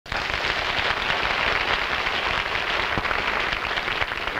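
A studio audience applauding, cutting in abruptly and holding steady as a dense crackle of clapping.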